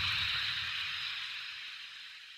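The fading tail of an explosion sound effect: a hissing rumble that dies away steadily.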